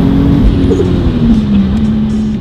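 Turbocharged Toyota 2JZ-GTE inline-six, swapped into a BMW Z4 coupe with a custom exhaust, heard from inside the cabin running hard. Its steady note dips in pitch about three quarters of the way through and then holds, as the engine comes off boost into vacuum.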